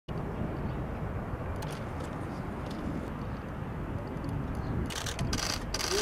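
Outdoor open-air ambience: a steady low rumble with faint distant voices. Near the end come several short rustling hisses.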